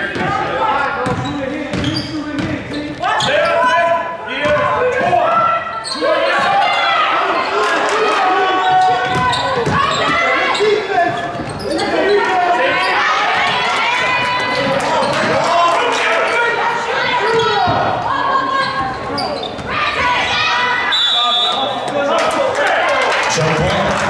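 A basketball being dribbled and bouncing on a hardwood gym floor, with players' and spectators' voices shouting throughout, ending in a referee's short whistle blast about a second before the end.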